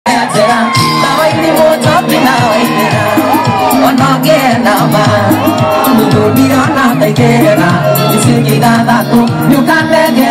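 Live mugithi music: a man singing into a microphone over a steady bass-driven backing, with a crowd shouting and cheering along.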